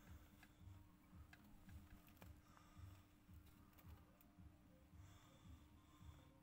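Near silence: faint room tone with a steady low hum and a scattering of faint clicks.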